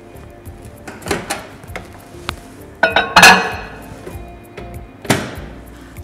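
Background music with a few knocks and clinks from a white ceramic bowl being handled and set down, the loudest clatter about three seconds in and another sharp knock about five seconds in.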